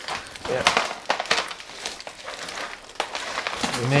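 Irregular crackling and scraping of a thin transparent plastic pot flexing and pumice pebbles shifting, as a gloved hand works a large orchid's root ball loose from the pot.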